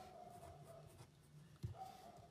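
Faint sound of a pen writing on paper.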